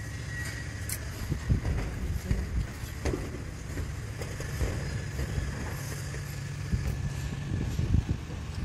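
Footsteps on profiled steel roof sheeting: irregular thuds and light taps over a steady low rumble.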